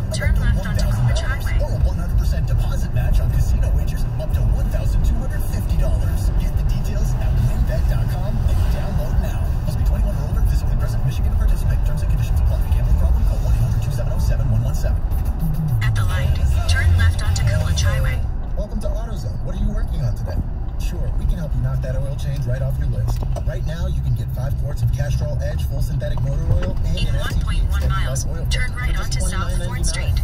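Road and engine noise inside a moving car's cabin, a steady low rumble, with a radio commercial's voice and music playing underneath.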